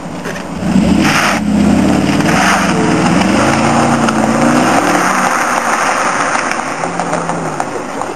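Mercedes-Benz SLR McLaren's engine bursting into a loud run under a second in as the car pulls away hard. The engine note rises and dips as it accelerates, then fades as the car heads off into the distance.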